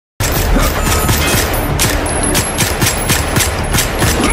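Shootout gunfire from handguns: rapid shots from several pistols, about four a second, starting abruptly a fifth of a second in and going on without a break.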